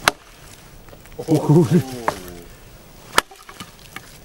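Black Joker Tropicano machete chopping into dead branches on a log: two sharp chops, one right away and another about three seconds later. Between them a brief voice is heard.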